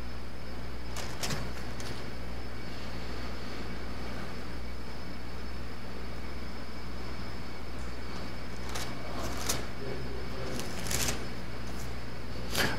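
A steady low hum, with a few brief, faint rustles of Bible pages being turned as the reader searches for the right chapter: once about a second in, and a few more near the end.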